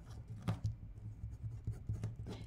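Pen writing on paper: a run of faint scratching strokes, with one sharper stroke about half a second in, over a low steady hum.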